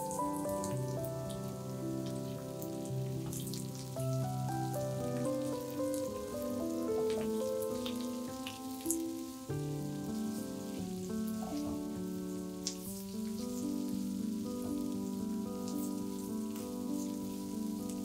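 Sliced onion and yellow bell pepper sizzling in a frying pan, a steady hiss with many small crackles, as the pepper strips are tipped in and stirred with a spatula. Background music with held notes plays over it.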